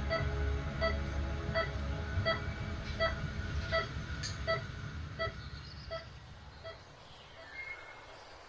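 Hospital heart monitor beeping steadily, about three beeps every two seconds, growing fainter until it fades out near the end, over a low rumble.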